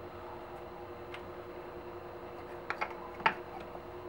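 Light clicks and knocks from hands handling a PVC fitting clamped between wood blocks in a bench vise: a few scattered taps, the sharpest about three seconds in, over a steady low hum.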